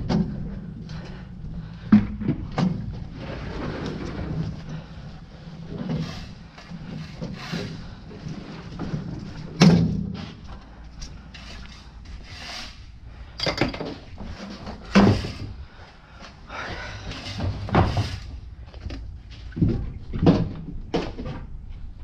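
Irregular knocks and clunks of yard equipment being handled and set down on a wooden shed floor, the loudest about ten seconds in, over a low rumble.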